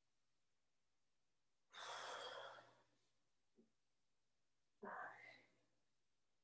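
A woman's faint breathing while she holds a deep lunge: one long breath out about two seconds in and a shorter breath near the end, with near silence between.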